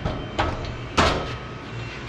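Plate-loaded barbell being racked onto the steel hooks of a squat rack: a light knock, then a sharper clank, then the loudest clank about a second in, ringing briefly.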